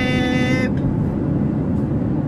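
Steady low road and engine rumble inside a moving car's cabin. In the first two-thirds of a second a voice holds one long, steady high note, then only the car's rumble remains.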